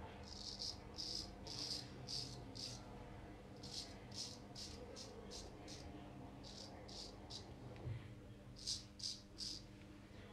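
Stainless Henckels Friodur straight razor scraping through lathered beard stubble on the neck in short strokes. The strokes come in quick runs of two to four with brief pauses between, during a with-the-grain pass.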